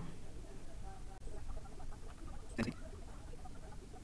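A single sharp computer mouse click about two and a half seconds in, heard over a faint steady hum and faint, indistinct background sounds.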